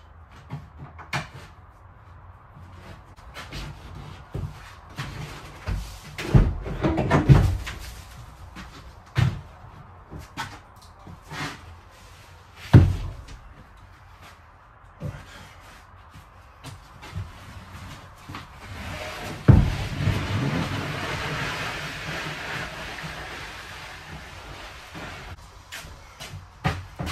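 A wooden desk being dismantled: scattered bangs and knocks of boards being forced apart, the loudest cluster about six to seven seconds in and single heavy bangs near thirteen and twenty seconds, followed by about five seconds of scraping.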